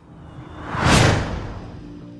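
A whoosh transition sound effect: a rushing swell that peaks about a second in and then fades, with faint musical tones underneath.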